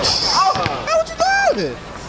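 A high, drawn-out vocal cry, held and then sliding down in pitch, heard twice in identical form, like an edited-in sound effect. A basketball thuds once on the court just before the first cry.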